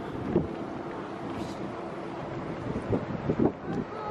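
Wind buffeting the microphone on an open ship's deck: a steady rushing noise, with a couple of brief voice sounds, one early and one near the end.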